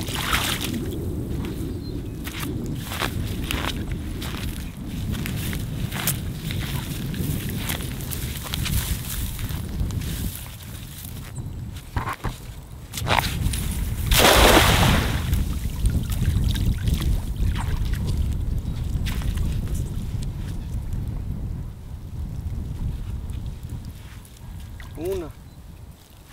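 Feet splashing and squelching through shallow muddy water, a run of wet steps in the first half, over a steady low rumble. About halfway through comes a loud rushing noise lasting about a second.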